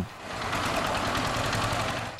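Single-cylinder diesel engine of a two-wheel power tiller (hand tractor) chugging with a fast, even beat as it hauls a heavily loaded trailer through mud.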